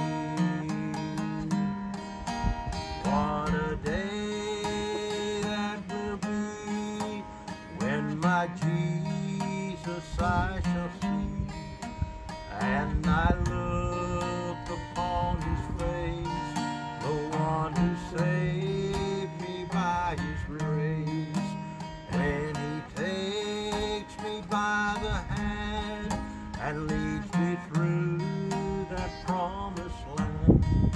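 Acoustic guitar strummed steadily, with a man singing over it in long, wavering notes.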